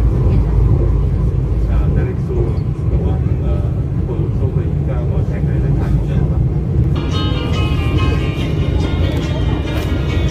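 Steady low rumble of an ERL airport-rail train running at speed, heard from inside the passenger carriage.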